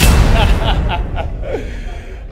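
A sudden deep boom at the start that fades over about two seconds, over the noise of a packed crowd in a hall, with a few short shouted calls from voices in the crowd.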